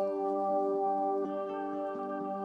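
Soft ambient, new-age style background music of long sustained chord tones, changing chord a little over a second in.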